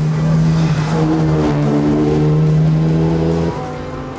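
Radical Rapture's turbocharged 2.3-litre Ford EcoBoost four-cylinder engine pulling hard at a fairly steady pitch as the car drives past, the note dropping away near the end.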